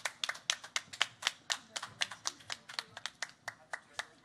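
One person clapping steadily close to a microphone, about four claps a second, stopping near the end.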